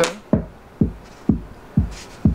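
Reactable electronic instrument playing a synchronized electronic loop with a steady drum-machine kick, about two beats a second, while a filter effect object is being applied to it.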